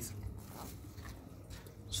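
Faint clicks and handling noise from a small plastic medicine bottle being opened with gloved hands, its cap coming off.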